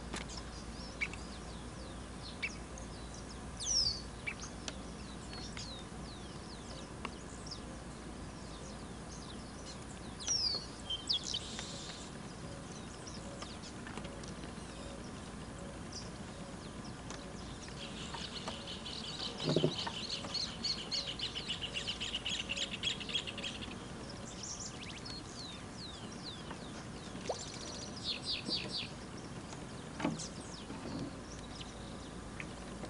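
Wild birds calling: scattered short chirps and quick falling whistles, with a fast trill lasting several seconds in the middle and a shorter trill near the end. A single dull knock sounds just as the long trill begins.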